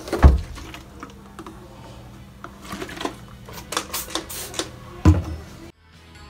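Hand trigger spray bottle squirting onto a bathroom mirror, a run of about half a dozen short hissy sprays in quick succession in the middle, over background music. A heavy thump comes just after the start and another near the end.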